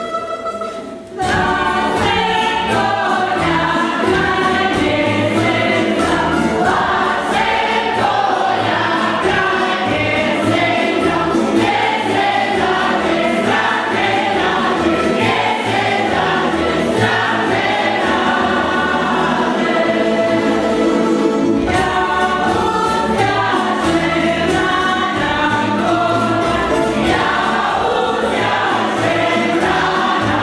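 A group singing a folk song in chorus with a tamburica string band (plucked strings and double bass) accompanying; a held note gives way to the full singing about a second in.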